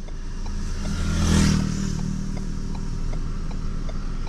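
Steady engine and road noise inside a moving pickup's cab, with another vehicle passing close by: a rush of sound that swells to a peak about a second and a half in and fades soon after.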